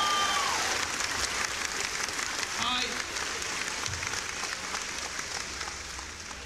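A large audience applauding, with a whoop near the start and a voice calling out briefly partway through; the clapping slowly fades.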